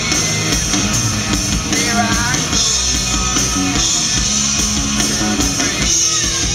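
Live rock band playing an instrumental passage: electric guitars, bass guitar and drum kit, with a lead guitar line whose notes bend in pitch about two seconds in.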